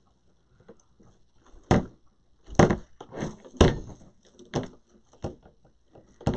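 A series of short knocks and thumps, about six over four seconds, with faint rustling between: craft materials such as a roll of deco mesh being handled and set down on a work table.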